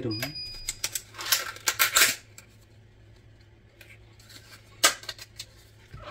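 Clicks and short crackling rustles of a clear plastic meat tray and containers being handled while minced garlic is added to raw beef, bunched in the first two seconds, then one sharp click near the end.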